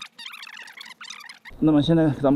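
A man's voice speaking, coming in about one and a half seconds in over a low rumble; before that there are only faint, thin, wavering high sounds.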